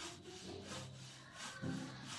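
Whiteboard marker rubbing across a whiteboard in a series of short strokes, a few a second, as lines are drawn.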